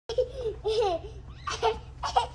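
A young child laughing and babbling with a woman, her laughter mixed in.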